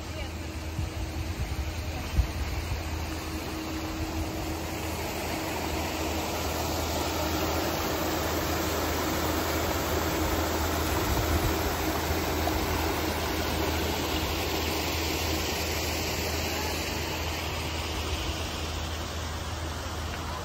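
Paddlewheel aerator churning canal water, a steady rushing splash that swells in the middle, over a low steady hum.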